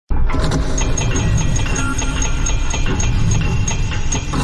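Logo-intro sound effect: a dense mechanical rumble with a fast, even metallic ticking, about five ticks a second, starting abruptly.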